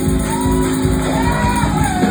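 Live church worship music: a man's voice, amplified through a microphone, sung and shouted in long gliding phrases over a held electric keyboard chord.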